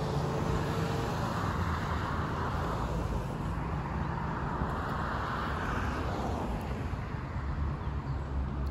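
Road traffic at an intersection: a car passing on the street, its tyre and engine noise swelling and then fading over a few seconds, over a steady low traffic rumble.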